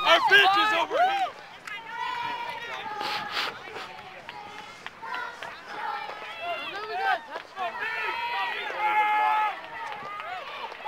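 Several people's voices outdoors, talking and calling out over one another. The loudest calls come in the first second, with quieter talk after.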